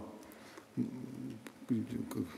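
Speech only: a man's voice speaking two short phrases, with quiet pauses between them.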